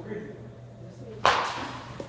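A baseball bat hitting a pitched ball: one sharp crack about a second in, ringing off briefly.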